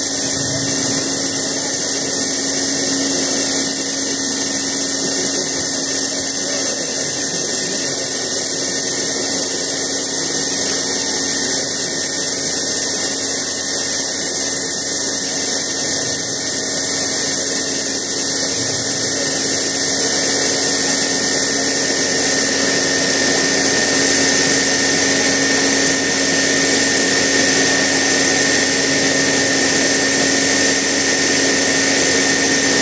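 Electric vacuum pump of a mobile bucket milking machine running steadily, a constant mechanical drone with a steady tone, while the milking cluster is on the cow.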